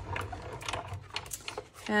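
Die-cutting machine rolling a plate sandwich through its rollers: a run of irregular light clicks and creaks over a low rumble that fades about halfway through.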